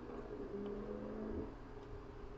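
Quiet room tone, with a faint low steady hum for about a second in the middle.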